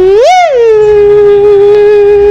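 Mouth-made imitation of a housefly buzzing: one held tone that swoops up in pitch and back down about a third of a second in, then stays steady.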